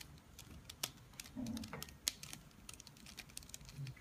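Gold mirror-block Rubik's cube being turned by hand: an irregular run of quick plastic clicks as the layers are twisted.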